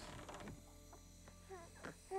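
Near silence: a faint steady hum with a few soft clicks, and two brief faint falling tones near the end.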